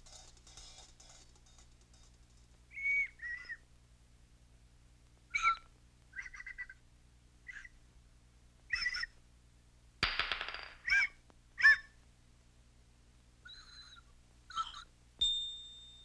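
Cartoon sound effects: about a dozen short, squeaky whistled chirps that slide in pitch, coming at irregular intervals. There is a brief rush of hiss about ten seconds in, and near the end a single clear ding that rings on.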